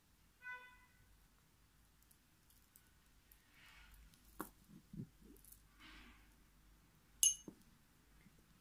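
Faint clicks and clinks of pearl beads being handled and threaded on fishing line, with one sharp ringing clink about seven seconds in. A short pitched tone sounds about half a second in.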